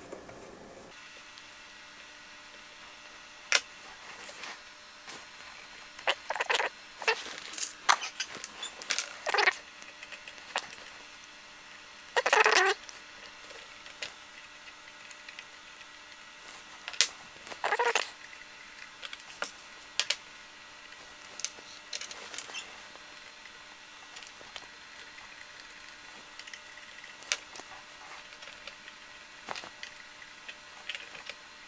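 Small hand tools working on a model truck's metal chassis: scattered clicks, taps and short scrapes of a screwdriver and nut driver on screws and nuts. The loudest is a brief scrape about twelve seconds in, with a faint steady hum underneath.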